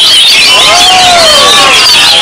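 Many caged oriental magpie-robins singing at once in a contest, a dense, continuous mass of fast high whistles and trills. A lower, drawn-out sound that rises and falls runs through the middle.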